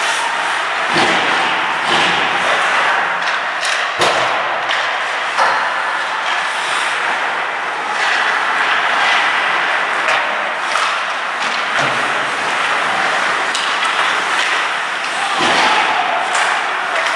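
Ice hockey play in an indoor rink: a steady, loud wash of skates scraping the ice and echoing rink noise, with sharp knocks of sticks, puck and bodies against the boards, the loudest about four seconds in.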